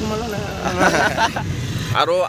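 Road traffic rumble from vehicles on the highway, a steady low noise.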